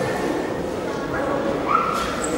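Low murmur of spectators' voices, with a short high-pitched squeak near the end.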